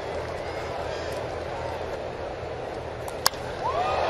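Ballpark crowd murmuring, then a single sharp crack of a baseball bat hitting a pitch a little over three seconds in, a ball fouled off deep. The crowd starts to rise just after the hit.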